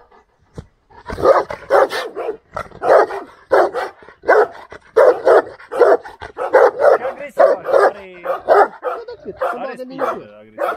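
A Romanian Corb shepherd dog barking repeatedly, two to three barks a second, starting about a second in, with some drawn-out sliding yelps near the end. It is a guard bark at the person filming, from a dog its owner rates as highly aggressive.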